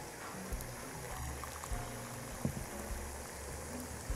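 Hot water poured from an electric kettle into a small glass bowl, a faint steady trickle, under quiet background music.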